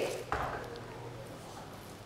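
Quiet room tone with one soft knock shortly after the start, from handling food and utensils on a kitchen worktop.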